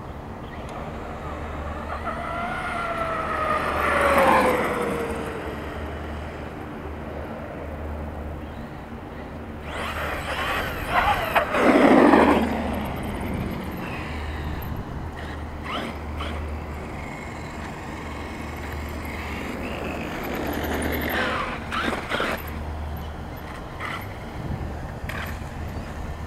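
Traxxas X-Maxx 8S RC monster truck: the whine of its electric motor falls in pitch about four seconds in. Around ten to thirteen seconds in comes a loud surge of motor and tyre noise as it drives on asphalt, and a few sharp knocks follow later.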